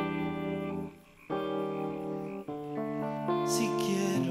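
Guitar playing the instrumental passage of a slow zamba: sustained chords that change every second or so, with a brief drop in level about a second in.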